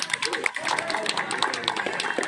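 A small group clapping by hand in scattered, irregular claps, with voices talking over them.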